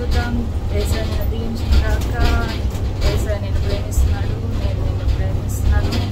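Steady low rumble of a shuttle bus's engine running, heard from inside the cabin, under a woman's voice singing.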